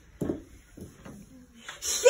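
Sponge scrubbing against the inside wall of a horse trailer, in short uneven rubbing strokes.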